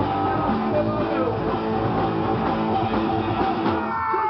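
Punk rock band playing live, with loud electric guitars, bass and drums through the club PA. Near the end the drums and low end drop out for a moment while guitar notes ring on.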